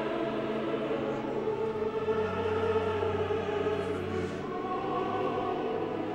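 Opera chorus singing long held chords, with the orchestra beneath them.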